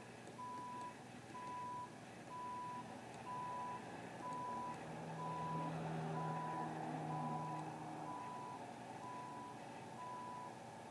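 Construction telehandler's backup alarm beeping steadily, about one half-second beep a second, over its engine, which runs louder for a few seconds in the middle.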